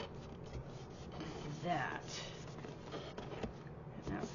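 Hands rubbing and pressing a cardstock roof panel down onto a cardboard box, a soft paper-on-paper rubbing. About two seconds in there is a short wordless voice sound.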